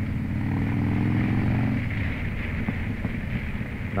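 Harley-Davidson V-twin motorcycle engine running steadily under way, heard from the rider's seat; its even note grows rougher and less distinct about two seconds in.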